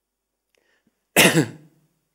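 A man clears his throat with one short, sharp cough a little over a second in.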